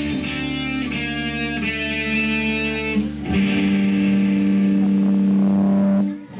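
Electric guitars in a live rock band letting chords ring out at the end of a song. A final loud chord is struck about three seconds in, held, then cut off.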